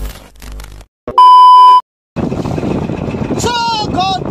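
A loud, steady electronic beep tone lasting under a second, about a second in. From about two seconds in comes the steady rushing noise of a boat under way with wind on the microphone, and a man's voice starts near the end.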